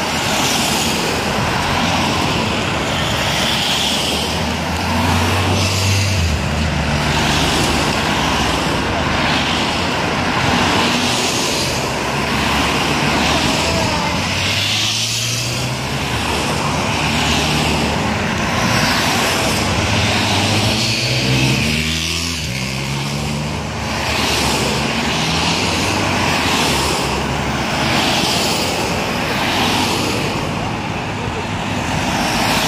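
Cycle-race team support cars with bikes on their roof racks driving past one after another, with engine and tyre noise and a steady rushing sound throughout. Engine notes rise as cars speed up, most clearly about 5, 14 and 21 seconds in.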